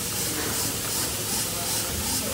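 Milking machine running: a steady vacuum hiss with a rhythmic pulsing about three times a second, the pulsators cycling the liners during milking.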